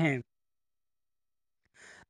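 A man's narrating voice ends a word just after the start, followed by about a second and a half of dead silence, then a faint intake of breath near the end.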